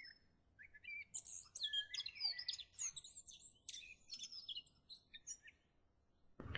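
Faint birdsong: a run of quick, high chirps and short rising and falling whistles, starting about a second in and fading out about five seconds in.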